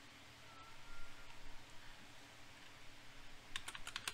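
Faint computer keyboard and mouse clicks, with a few quick clicks in a row near the end.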